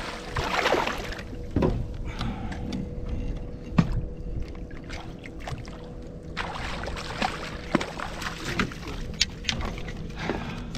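A hooked bass being fought and landed beside a kayak: water splashing in bursts, with knocks and clicks of tackle against the hull and a faint steady hum underneath.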